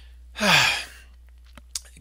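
A man's sigh: one breathy exhale, its voice falling in pitch, about half a second in, followed by a few faint clicks near the end.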